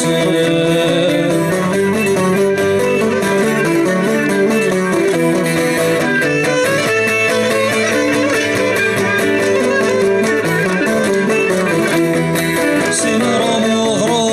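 Cretan lyra playing an instrumental melody of Cretan folk dance music over a steady strummed accompaniment on plucked lutes.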